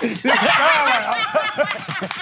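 Laughter and chuckling, with a few words spoken over it.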